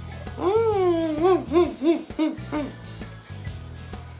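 A person's whimpering, wordless voice: one long whine that dips and rises, then a string of short rising-and-falling whimpers, over steady background music.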